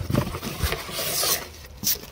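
Artificial flowers being pulled out of a cardboard box: their leaves and stems rub and scrape against the cardboard, with a short sharper scrape near the end.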